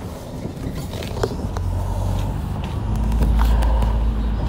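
Inside a moving road vehicle: a low engine drone that swells about halfway through and is loudest near the end, with road noise and a few light clicks and rattles.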